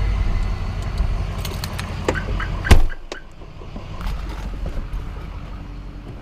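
Low, steady rumble of a pickup truck's engine heard inside the cab. A single sharp, loud thud comes nearly three seconds in, and after it the sound drops to a quieter, thinner background.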